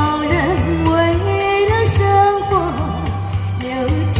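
A woman singing a slow pop song into a handheld microphone over a backing track with a steady, repeating bass line; she holds long notes with a little vibrato.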